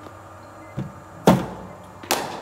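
A cricket bat striking a bowling-machine delivery on the front foot: a soft thud a little under a second in, then a single loud sharp crack of bat on ball about half a second later.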